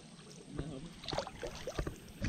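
Water sloshing and light splashing around someone wading through shallow, lily-pad-covered water, with a few short sharp knocks and clicks.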